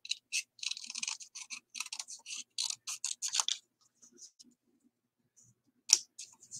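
Scissors cutting through kraft cardstock: a quick run of short, crisp snips for about three and a half seconds, then a few fainter ones and one louder click near the end.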